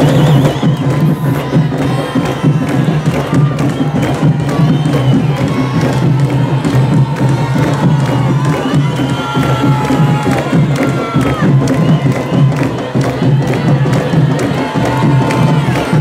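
Candombe drum line (tambores) playing a steady, driving rhythm, with a crowd cheering and shouting over it.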